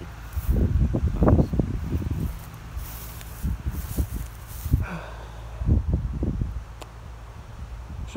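Irregular footsteps and rustling on loose soil and grass, with handling noise on the phone's microphone.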